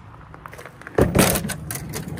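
A magnetic sweeper knocks into a wheelbarrow about a second in, followed by a brief clatter of nails and screws dropping off it into the barrow.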